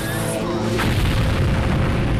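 Film soundtrack music, joined a little under a second in by a deep, sustained boom effect for a cartoon rocket's engine igniting for launch.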